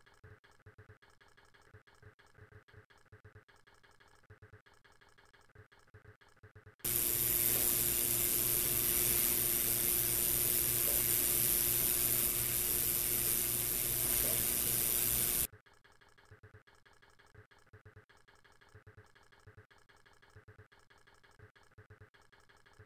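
Central Machinery ultrasonic cleaner running a cleaning cycle on reel parts in solution: a loud, steady hiss with a low hum, starting suddenly about seven seconds in and cutting off about eight seconds later. Before and after it there is only faint sound.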